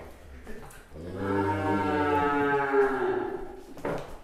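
A bull mooing: one long, low, even call starting about a second in and lasting about two and a half seconds. A short knock follows near the end.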